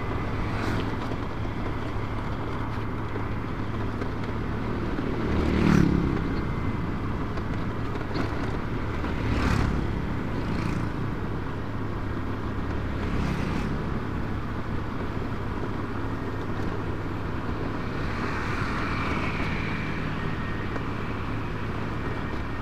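Motorcycle riding at a steady cruising speed, a steady engine drone mixed with road and wind noise. It swells briefly about six seconds in and again near the ten-second mark.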